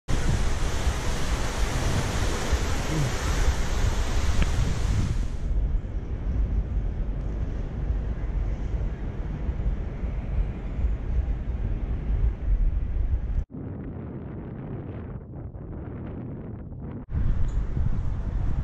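Wind buffeting an action camera's microphone, a low rumbling noise over open-air ambience. It changes abruptly in character and level at cuts about five, thirteen and a half, and seventeen seconds in.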